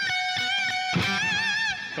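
Electric guitar playing a short lead harmony line high on the neck: held notes with vibrato, moving to a new note about a second in.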